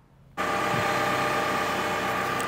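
Diesel engine of a Caterpillar wheeled excavator running steadily, cutting in abruptly a moment in.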